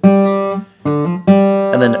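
Steel-string acoustic guitar: the open D string is plucked and hammered on to the third fret, a short two-note figure played twice with a brief break between.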